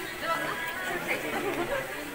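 Indistinct chatter of several people talking at once among shoppers in a busy store, with no single clear voice.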